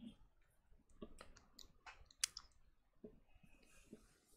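Near silence with a scattered handful of faint, sharp clicks, the loudest a little over two seconds in.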